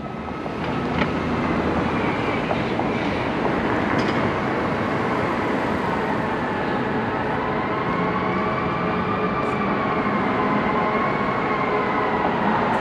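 Steady city street noise, a constant rumble and hiss with a faint whine that slowly rises and falls in pitch.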